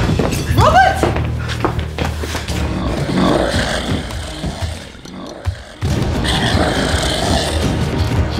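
Dramatic film score under fight sound effects: thuds and impacts, with a short rising pitched sound about half a second in. The sound drops away briefly about five seconds in, then the music and hits come back in full.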